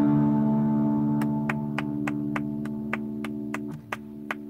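Electric guitar chord held on and slowly fading as the piece ends, its lower notes cutting off shortly before the end. From about a second in, evenly spaced sharp clicks come about three times a second.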